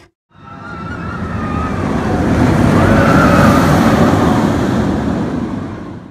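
A whooshing swell sound effect that builds for about three seconds and then fades away, with a faint wavering tone running through it.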